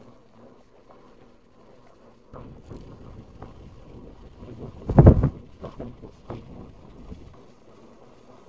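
Car driving with a low steady road rumble; from about two seconds in, gusts of wind buffet the microphone at the side window, the strongest blast about five seconds in, and the buffeting cuts off suddenly near the end.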